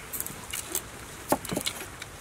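A cleaver slicing a cucumber on a wooden cutting board: a scatter of short sharp clicks and knocks, the loudest a little past halfway.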